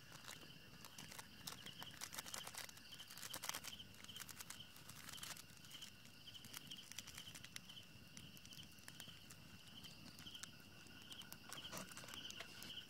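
Faint night insect chirping: a steady high trill that pulses about twice a second. Scattered light crackles come in the first half and again near the end.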